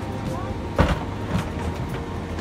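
Steady low hum of an airliner cabin with passengers' voices in the background, and a single knock a little under a second in.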